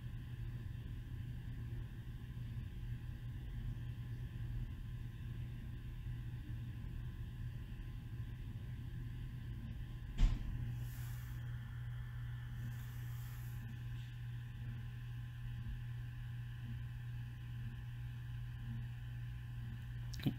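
Plastic protective film on a computer screen being handled and peeled, mostly faint under a steady low hum, with one sharp click about halfway through followed by two brief faint rustles.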